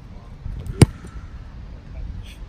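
A football kicked off a kicking tee: the kicker's foot strikes the ball once, a little under a second in, as a single sharp impact.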